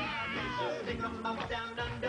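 A cappella group singing the show's theme song: several voices in harmony, with pitches gliding up and down.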